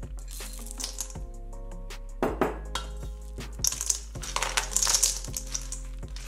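Background music over chocolate chips dropping into a stainless steel bowl with light clicks in the first second. From about two seconds in, a silicone spatula stirs them into thick cookie dough, scraping against the bowl.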